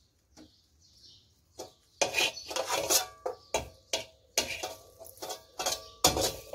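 Metal spatula scraping and stirring around a steel wok, tossing roasting shallots and garlic cloves. A few faint scrapes come first, then from about two seconds in, quick repeated scrapes and clinks of metal on metal.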